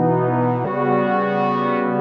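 Synth pad in Ableton Note on an iPad playing sustained chords from a MIDI keyboard, with a mellow, horn-like tone; the chord changes about two-thirds of a second in and again at the end.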